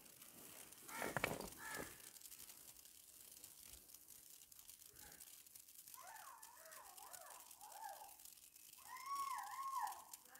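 Faint bird calls: two short harsh calls about a second in, then wavering, warbling calls in the second half and an arched call near the end.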